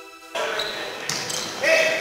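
Background music cuts off about a third of a second in, giving way to the live sound of a volleyball rally in a gymnasium: players' shouts and voices echoing in the hall, with a few sharp hits of the ball.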